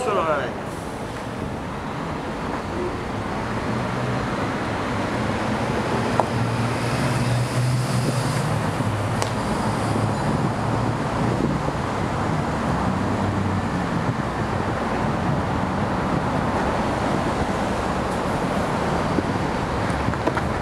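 Steady road-traffic noise, with a vehicle's low engine hum swelling from about six to ten seconds in. A single sharp click is heard about six seconds in.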